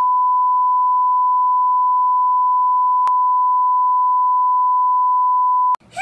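A single steady test-pattern beep, the reference tone played with television colour bars, held at one pitch for almost six seconds and cutting off suddenly near the end.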